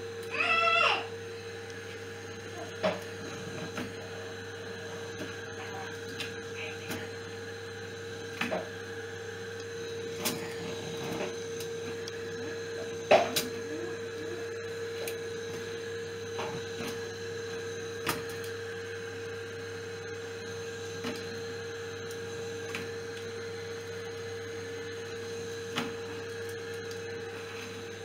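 A kitchen appliance hums steadily with a fixed tone. Occasional light clicks and knocks of kitchen utensils are scattered over it, the sharpest about 13 seconds in. A brief high, voice-like sound comes about half a second in.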